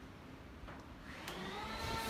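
A motor spinning up: a whine that rises in pitch over a hiss, starting about a second in and growing louder.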